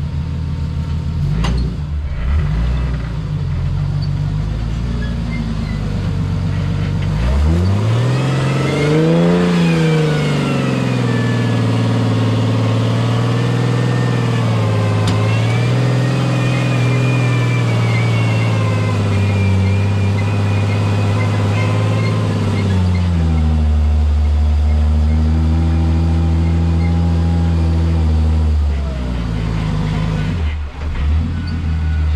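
Jeep rock crawler's engine running low, then revved up about seven seconds in and held at a steady higher speed for over ten seconds as it pulls up a rock ledge, then eased back down and dropping again near the end.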